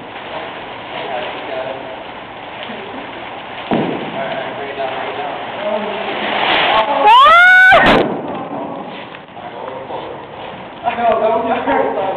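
Plastic tarp rustling and crinkling as it is handled and pulled down off a wooden frame, building up over the first seven seconds. About seven seconds in comes a man's very loud yell that rises and then falls in pitch.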